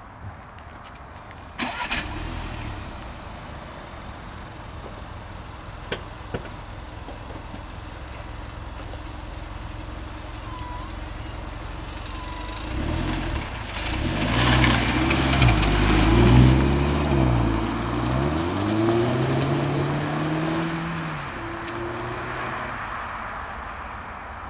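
Audi A1 1.4 TFSI's turbocharged four-cylinder petrol engine starts about two seconds in and idles. About thirteen seconds in the car pulls away: the engine pitch rises, drops and rises again several times as it changes up through the gears, loudest in the middle, then fades as it drives off.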